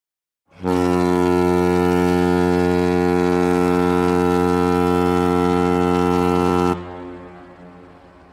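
Big ship's horn sounding one long, steady, low blast of about six seconds, then cutting off suddenly and echoing away.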